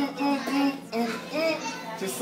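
A man humming a short tune, a string of separate pitched notes that rise and fall like the rhythm of a sung line.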